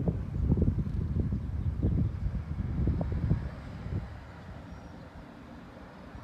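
Wind buffeting the microphone outdoors: irregular low rumbling gusts, strongest over the first few seconds, then easing to a faint low rumble.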